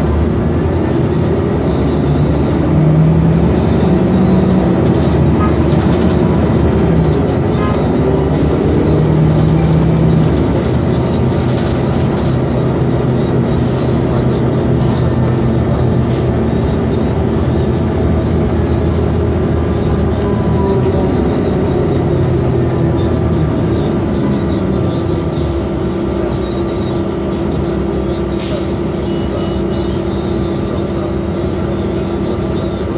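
Cabin of a 2002 New Flyer D40LF transit bus under way: its Detroit Diesel Series 50 four-cylinder diesel and Allison B400R automatic transmission drone steadily. The engine note shifts up and down in the first ten seconds or so, then settles into an even drone.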